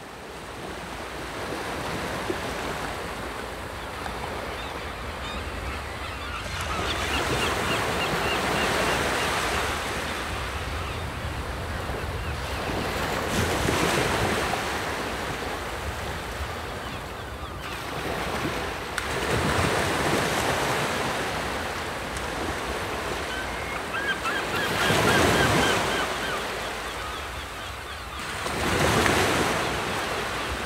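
Wind gusting through trees, a rushing sound that swells and fades every five or six seconds, with faint high chirps over some of the gusts.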